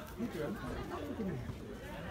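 Indistinct chatter of several people talking and calling out, the words not clear.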